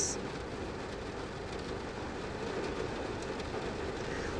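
Steady background noise, an even hiss with no distinct events, swelling slightly in the second half.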